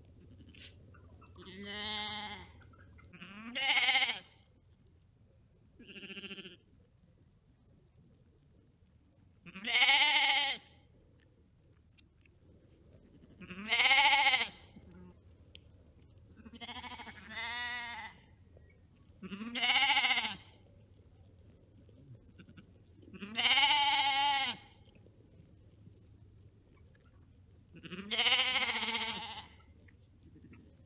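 Sheep bleating: about ten separate baas a few seconds apart, each under a second long and wavering in pitch, two of them close together near the middle.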